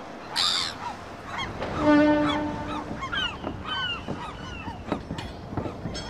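Harbour ambience with seagulls giving many short calls, and a steady horn note lasting about a second at around two seconds in.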